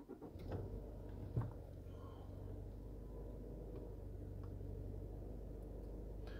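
A 2021 Subaru Outback XT's 2.4-litre turbocharged four-cylinder engine starting about half a second in and settling into a steady fast idle of about 1,500 rpm, heard from inside the cabin. It starts right up, with one short click soon after.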